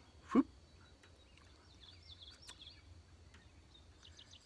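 Faint birds chirping about two seconds in, over a quiet outdoor background with a faint steady high tone. Just after the start there is a short, louder sound that falls quickly in pitch.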